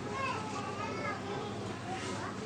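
Faint background voices, like children chattering, over steady room noise.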